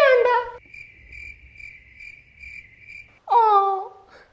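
A cricket chirping steadily for a couple of seconds, pulsing about twice a second: the comic 'awkward silence' cricket sound effect. A short laugh comes just before it, and a brief voice just after.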